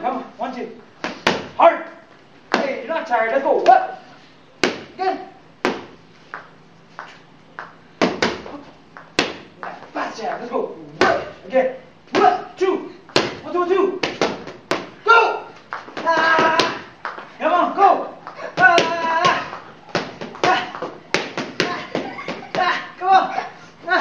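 Boxing gloves smacking focus mitts in irregular single punches and quick two- and three-punch combinations, with voices talking between the strikes.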